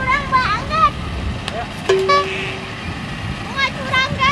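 A single steady horn toot, under a second long, sounds about two seconds in, with high-pitched children's voices before and after it.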